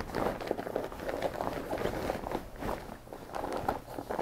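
Denim jacket fabric rustling and shuffling as it is pulled and smoothed over a heat press platen and pillow, with small irregular taps from the handling.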